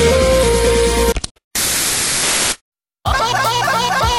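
Electronic music from a TV cuts off about a second in, followed by about a second of television static hiss, as the channel changes. After a short silent gap a different piece of music with a wavering melody starts.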